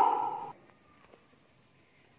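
The drawn-out end of a woman's spoken phrase, held on a high rising pitch, cut off about half a second in. Then dead silence.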